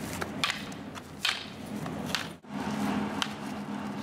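Scattered light knocks and scuffs from two stick fighters moving about with their sticks on asphalt, over a steady low hum. The sound drops out for a moment just past halfway.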